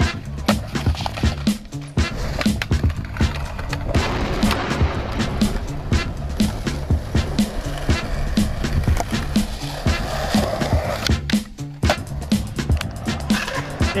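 Music with a steady beat, about two beats a second, over skateboard sounds: a board grinding a concrete ledge, then its wheels rolling on concrete.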